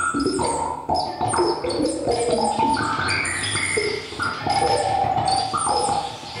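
Experimental electronic music played live on synthesizers and electronics: a busy stream of short pitched tones that jump to new pitches every fraction of a second, with high chirping tones above and a low rumble underneath.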